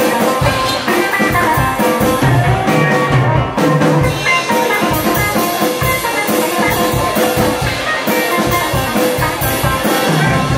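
Live band playing an instrumental passage: guitar over a steady drum-kit beat, with no vocals.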